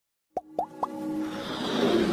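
Animated logo intro sound effects: three short pops in quick succession, each rising quickly in pitch, then a swelling sound that grows steadily louder.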